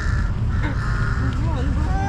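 A bird gives one drawn-out call of level pitch in the first second, over a steady low rumble, with brief snatches of voices later on.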